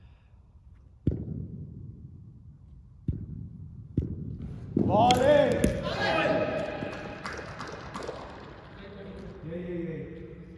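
Three sharp knocks of a cricket ball off bat and floor, echoing in a large indoor hall, then men shouting loudly for a couple of seconds from about halfway through, dying down into talk.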